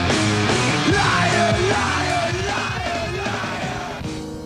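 Loud rock band playing with a yelled lead vocal over electric guitar and drums; the music eases down near the end.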